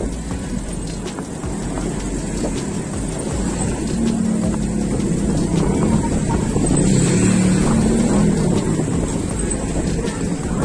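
Street traffic with a steady low rumble. A nearby truck engine hums louder from about four seconds in and fades again shortly before the end.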